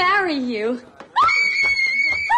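A woman's excited vocal exclamation with a falling pitch, then, about a second in, a long, very high-pitched scream of excitement after she has accepted a marriage proposal.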